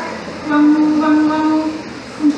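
A woman's voice drawing out one long, steady vowel for over a second, after a few short spoken syllables.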